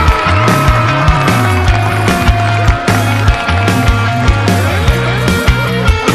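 Heavy rock band playing an instrumental passage: dense guitars and bass over drums, with strong hits about twice a second.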